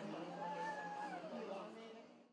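Indistinct chatter of a clinic waiting room with a faint, drawn-out high cry of a small child, lasting about a second.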